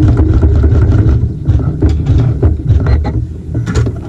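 Embroidery machine stitching a tack-down line through layered quilting fabric in the hoop, the needle running at a fast, steady rate.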